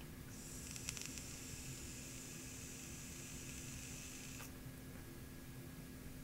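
Faint airy hiss of a long, restricted direct-to-lung draw on a Joyetech Teros One refillable pod vape, lasting about four seconds and cutting off suddenly.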